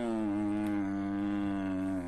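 A man's long, drawn-out vocal groan held on one note, sinking slightly in pitch before breaking off just after the end.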